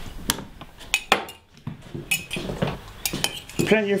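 China mugs and cutlery clinking and knocking against a stainless-steel sink and draining board while washing up by hand: a run of short, sharp clinks at irregular intervals. A man's voice comes in near the end.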